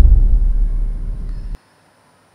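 A loud, deep rumble that cuts off abruptly about one and a half seconds in, leaving near silence.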